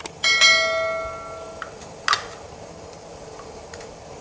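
Stainless-steel idiyappam press clanging once against a steel dish, ringing clearly for about a second and a half before being cut short, followed by a light knock about two seconds in.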